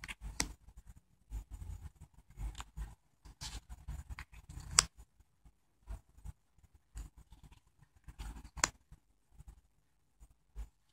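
Tarot cards being slid off a deck one at a time and laid on a pile: soft sliding and rustling, with three sharp card snaps, the loudest about five seconds in.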